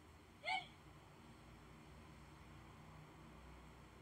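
A cat gives one short meow about half a second in, rising then falling in pitch.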